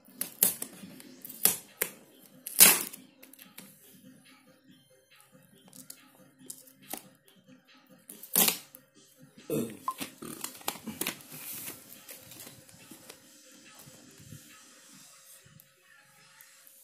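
Sharp clicks and taps of flat ribbon cables being fitted into the panel connectors of an opened LED TV, with soft crinkling of the cables between them; the loudest click comes between two and three seconds in, another a little after eight seconds.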